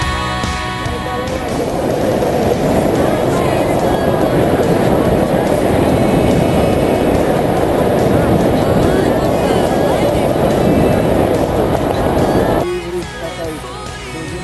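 Wind rushing over the camera microphone during a descent under a parachute canopy, a dense low noise over quieter background music. It cuts off suddenly near the end, leaving the music.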